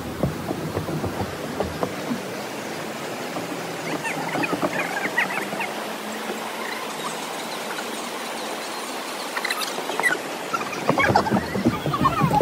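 Outdoor ambience of a steady rush like a stream running under a footbridge, with scattered short high chirps about four to six seconds in. A few sharp clicks and voices come in near the end.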